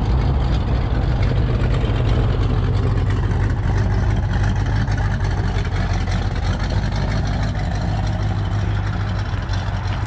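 A car engine idling steadily, a low, even engine note that eases off slightly toward the end.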